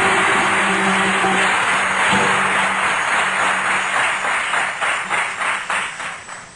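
Audience applauding over background music with a held low note. The clapping thins into separate claps and dies away near the end.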